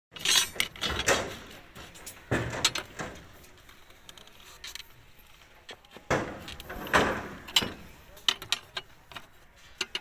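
Steel rebar being bent by hand around a pin on a steel bending plate with a pipe lever: metal clanks and scrapes in three clusters, about a second in, near two and a half seconds, and again from about six to seven and a half seconds.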